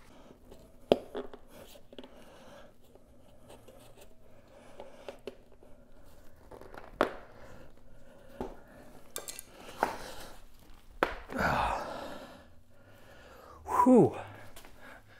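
A tight mountain-bike tire bead being worked onto the rim by hand over a CushCore foam insert: rubber rubbing and creaking against the rim, with scattered sharp snaps and clicks as the bead is forced over. A louder, strained breath near the end.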